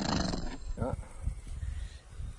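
A person giving a short playful growl, like an animal's roar, at the start, followed by a quick spoken "yeah".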